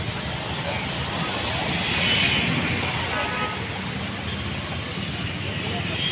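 Steady outdoor street noise: road traffic running by, with voices mixed in.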